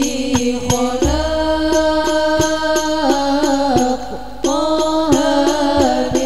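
Devotional chant-like singing in held, sliding notes over a steady percussion beat of about three strokes a second, in the style of Islamic sholawat with frame drums.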